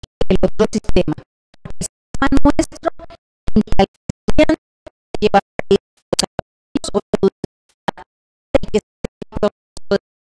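A woman's voice through a handheld microphone, chopped into short stuttering fragments by repeated audio dropouts, so the speech comes through garbled.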